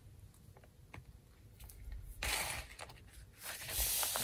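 Hands rubbing and smoothing a sheet of paper flat, a soft papery rustle starting about two seconds in and lasting about a second, with a few faint light ticks before it.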